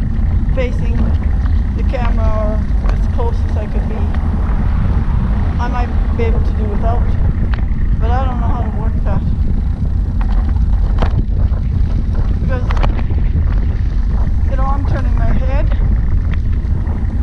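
A woman talking, her voice partly buried under steady wind buffeting the action-camera microphone as she rides a recumbent trike; the low wind rumble is the loudest sound.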